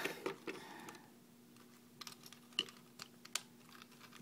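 Light, scattered plastic clicks and taps from a plastic Transformers toy car being handled. There are a few near the start, then a lull, then several more sharp clicks in the second half.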